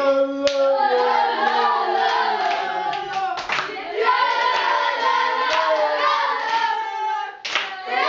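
A group of boys singing a celebration chant together in a tiled shower room, with a few sharp hits cutting through, about half a second, three and a half seconds and seven and a half seconds in.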